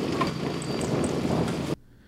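Mini excavator running steadily while backfilling a trench, its blade pushing soil into the ditch. The engine hum and the noise stop abruptly near the end.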